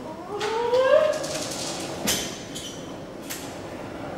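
Solo female voice in contemporary extended technique, a wavering pitched tone sliding upward with a cat-like quality, then breathy noise. Two sharp clicks cut in, about two seconds in and again about three seconds in.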